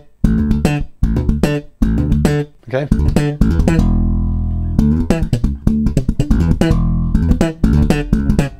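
Electric bass guitar played slap style at speed: a repeated figure of thumb slap, left-hand hammer-on, thumb slap and pop (thumb, hammer, thumb, pluck) on the open A and the D, in quick short phrases with one longer ringing note near the middle.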